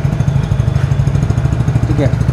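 Hero Passion+ 97.2 cc single-cylinder four-stroke engine idling steadily, heard right at the exhaust silencer outlet.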